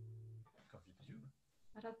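A low note on an acoustic guitar rings on, slowly fading, and is cut off about half a second in. After a faint murmur, a voice starts speaking near the end.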